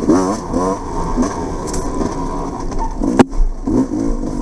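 Off-road dirt bike engine revving up and down as the rider works the throttle along a woods trail, its pitch rising and falling quickly. A single sharp knock about three seconds in.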